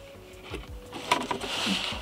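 Cardboard mailer box being handled as its lid is held open: light rustling and scraping of cardboard and packing, with a few soft knocks.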